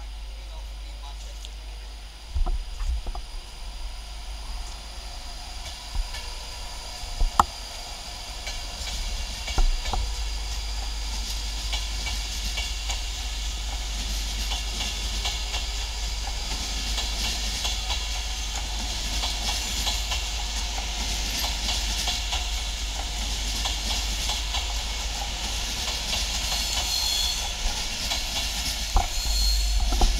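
Class 390 Pendolino electric train running past: a steady rolling hiss of wheels on rail that grows louder over the second half, with a few sharp clicks in the first ten seconds.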